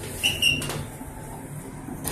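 A short high electronic beep from an Otis elevator's car button panel as a floor button is pressed, then a low steady rumble inside the cab.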